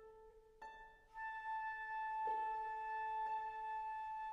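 Harp and flute playing classical music: plucked harp notes with ringing tails, and from about a second in, a long steady high flute note held over them.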